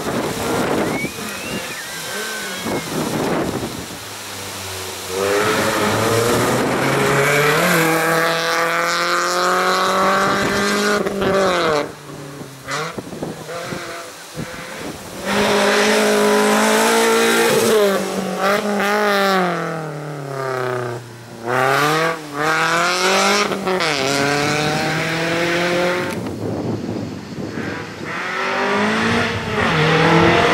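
Volkswagen Lupo race car's engine revving hard through a slalom, its pitch climbing and falling every couple of seconds as the driver accelerates and lifts between cone chicanes.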